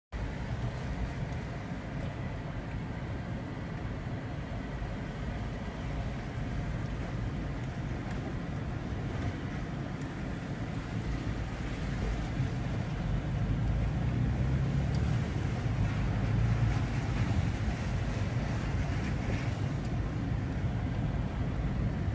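Inside a vehicle's cabin, a steady low engine and tyre rumble while driving slowly on a dirt trail, growing a little louder in the second half.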